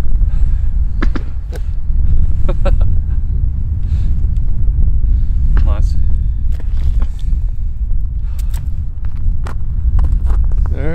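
Wind buffeting the microphone, a steady low rumble throughout, with a few light clicks in the first few seconds and a brief faint voice about midway.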